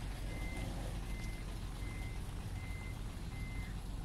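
Truck reversing alarm beeping, a single high tone repeating about every three-quarters of a second, over a steady low rumble.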